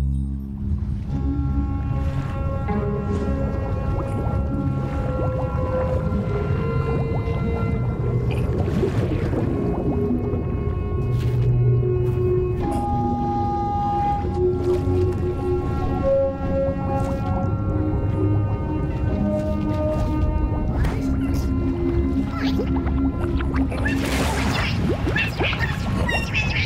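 Cartoon background music of slow, held melodic notes over a low rumble, mixed with watery underwater sound effects and a louder swell near the end.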